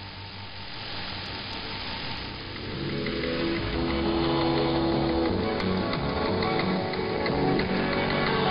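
Music from a shortwave radio broadcast, heard through the receiver with static hiss. It is thin and noisy for the first few seconds, then fuller sustained notes swell in about three seconds in.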